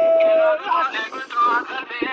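A man singing a Kurdish dengbêj-style folk song. A long held note breaks off about half a second in, followed by quick, wavering, ornamented phrases.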